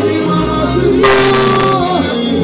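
Live gospel music: a lead singer and backing singers on microphones holding sung notes over a steady bass accompaniment. A short wash of noise cuts in about a second in.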